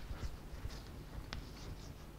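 Chalk writing on a blackboard: a sharp tap as the chalk meets the board, then several short, faint, scratchy strokes.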